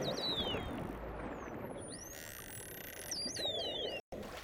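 False killer whales whistling underwater: several high whistles that glide up and down and overlap, over a low hiss of water. Some fall steeply in pitch, at the start and again near the end.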